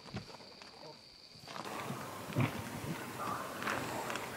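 An animal making short, irregular calls. They begin about one and a half seconds in, after a quieter stretch.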